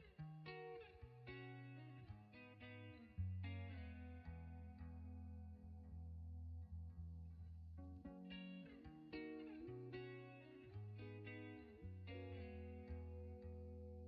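Soft background music led by a plucked guitar, notes changing every second or so over a steady bass line.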